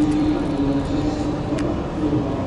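Steady low mechanical hum and rumble from the Diamond Princess cruise ship's machinery running at the berth before departure, with one held low tone. A single short click about one and a half seconds in.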